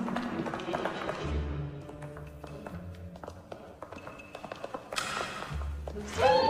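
Tense film score with held low bass notes. Over it come quick taps of shoes running on a hard marble floor, thickest in the first couple of seconds, and a brief rushing swell near the end.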